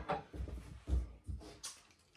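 Brass padlock being unlocked and lifted off a metal door hasp: a few light metallic clicks and rattles.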